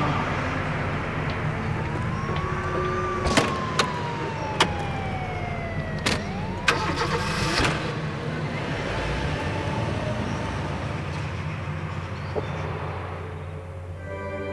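An estate car's engine running, with several sharp knocks in the middle like the tailgate and doors being shut, as the car pulls away. Over it a siren-like tone glides up and slowly down twice.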